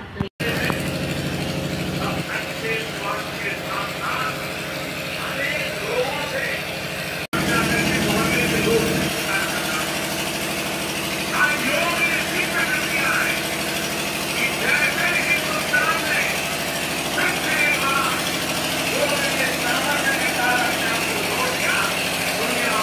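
A vehicle engine idling steadily, with a voice over loudspeakers heard in the distance. The sound drops out for a moment twice.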